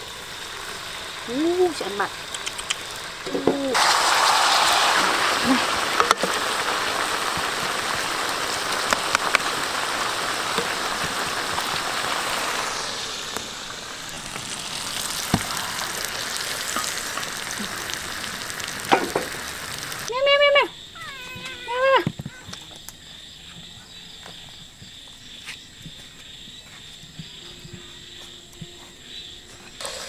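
Snakehead fish frying in a wok: a loud, steady sizzle that sets in about four seconds in, eases after about nine seconds and stops suddenly about two-thirds of the way through. Brief voice sounds come before and after it.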